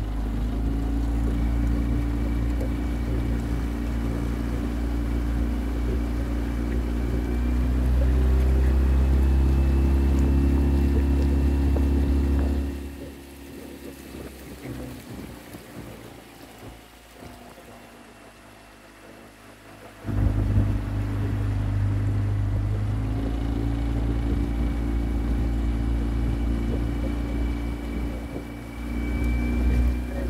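Small motorboat's outboard motor running steadily under way. About 13 s in it drops away to a much quieter level, and about 20 s in it suddenly picks up again and runs on.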